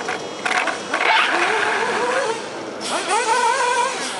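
HPI Savage RC monster truck's small nitro engine revving up and down under changing throttle, with a rush of noise through the first three seconds.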